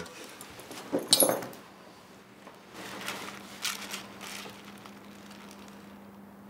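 Faint rustling of a plastic carrier bag: one short crinkle about a second in, then softer rustling around three to four seconds in, over a faint low hum.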